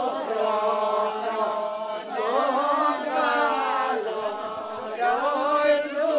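A group of voices singing together without instruments, in long drawn-out phrases with held, gliding notes and short breaks between phrases.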